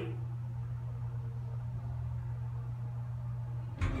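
Steady low hum inside a 1989 Oliver & Williams hydraulic elevator car at the landing. A brief thump near the end as the sliding doors start to open.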